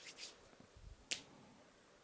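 Faint short clicks and small handling noises, with one sharper click about a second in.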